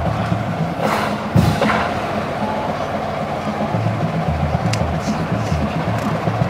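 Marching band playing, low brass notes over drums, heard from within the crowd. A single sharp knock about one and a half seconds in.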